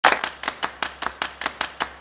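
Rhythmic clapping beat, about five sharp claps a second, evenly spaced: the percussive opening of an intro music track.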